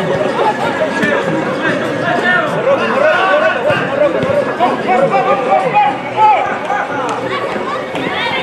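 Many voices talking and calling out over one another: chatter from the spectators and players around the pitch.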